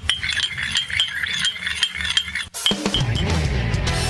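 Coffee pouring into a ceramic mug with light clinking. About two and a half seconds in, it gives way to a music jingle with guitar.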